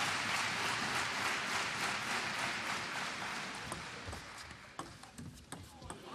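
Arena crowd noise dying away, then a table tennis rally: a run of sharp, irregular clicks of the ball off bats and table in the last couple of seconds.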